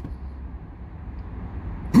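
Steady low vehicle rumble heard from inside a car cabin.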